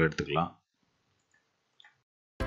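A voice trails off in the first half second, then near silence, broken near the end by one short, faint click from computer input in a screen-recorded software session.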